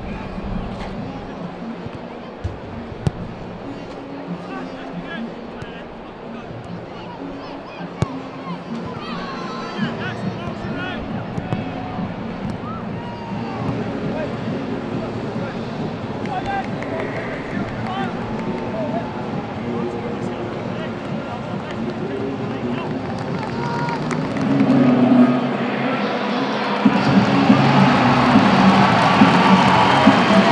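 Football stadium ambience: a murmuring crowd with music playing over the public-address system, building louder over the last few seconds. A couple of sharp thuds early on come from a football being kicked during the warm-up.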